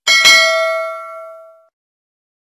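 Notification-bell sound effect: a bright metallic ding struck twice in quick succession, ringing on with several tones and fading away within about a second and a half.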